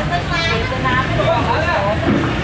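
People talking over a steady low rumble of street traffic and motorbikes.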